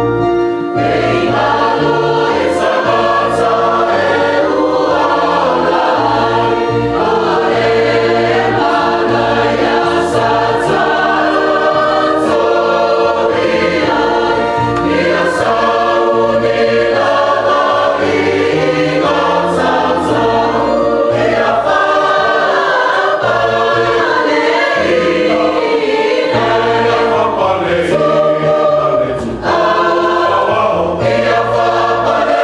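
Church choir singing a hymn in parts, with a sustained electronic keyboard bass beneath the voices.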